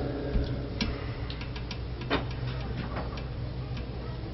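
A steady low hum with about a dozen small, irregular clicks and taps scattered through it, in a pause between speech.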